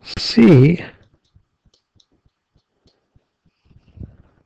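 A man's voice for about the first second, then faint, irregular clicks and ticks of a stylus tapping and stroking across a writing tablet as numbers are handwritten, with a small cluster of them near the end.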